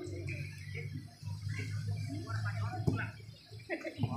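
Distant voices of players and onlookers calling out across an outdoor football pitch, over a steady low hum. A single sharp knock comes just before three seconds in.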